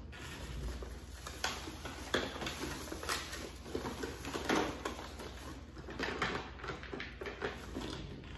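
Handling and rummaging noise close to the microphone: irregular light knocks, taps and rustles as someone searches for a hair comb, with fabric brushing near the phone.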